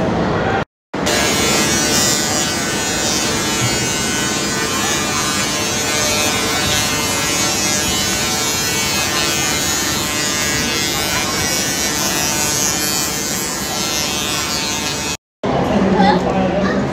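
A loud, steady buzzing drone with many overtones over a background hubbub of voices; it drops out to silence briefly near the start and again near the end.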